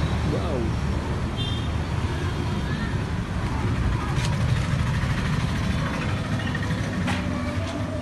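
A steady low rumble of a motor vehicle running, with no clear changes.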